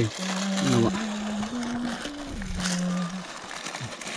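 A man's voice holding a few long, level notes that step up in pitch and then drop, like drawn-out humming or singing, over a steady background hiss.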